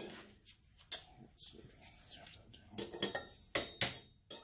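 Metal-on-metal clinks as a steel spacer is set onto the nose of a VW stroker crankshaft and worked down with a metal tool, a tight fit on the crank. A few faint clicks come first, then a quick run of louder, sharp clinks near the end.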